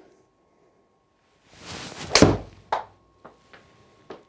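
Golf iron whooshing through the air on a full swing, ending in a sharp crack as it strikes the ball off a hitting mat, followed by a few lighter knocks. A solidly struck shot that felt absolutely ripped.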